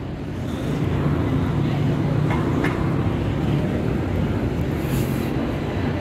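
Steady rumble of city street traffic, engines running on a busy road, with a short hiss near the end.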